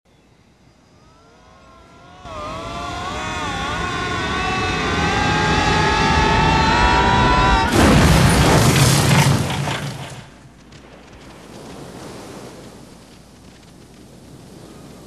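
Film sound effects of a spaceship crash-landing: a wavering, gliding whine swells over several seconds, then a loud crash about eight seconds in rumbles for about two seconds before dying down to a quieter hiss.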